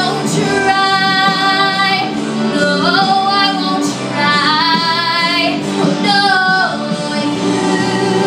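A young woman singing, holding long notes with vibrato and sliding up and down between pitches.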